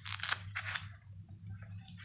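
Crinkling and rustling of a disposable diaper and fabric being handled as it is fastened on a doll, with a few short crackles in the first second, then quieter.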